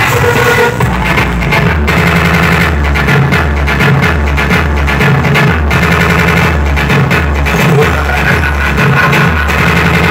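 Loud music, with a heavy bass line pulsing in an even repeating beat, played through a trailer-mounted stack of loudspeaker cabinets run from a laptop and DJ mixer.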